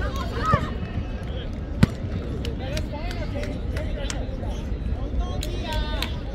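Players and spectators calling out on a football pitch over a steady low rumble, with a sharp knock about two seconds in and several fainter clicks.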